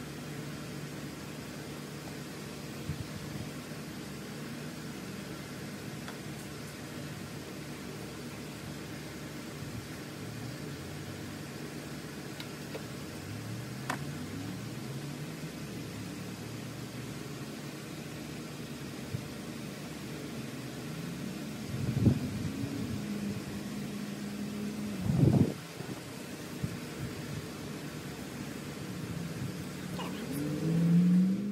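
Chevrolet Cruze 1.4-litre turbocharged four-cylinder engine idling with a steady hum, its pitch briefly shifting a few times, and two loud thumps about 22 and 25 seconds in.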